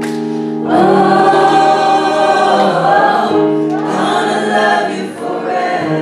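Live gospel vocal group singing in harmony over long held chords. The voices come in strongly less than a second in and dip briefly near the end.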